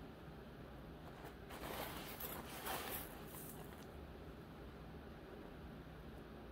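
Small glass bicone beads and rose quartz chips being scooped up into a hand: a rustle of beads lasting about two seconds, starting about a second and a half in and loudest near the end.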